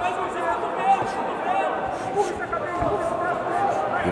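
Fight-venue ambience: many overlapping voices from the crowd and people around the cage calling out, with a few faint thuds.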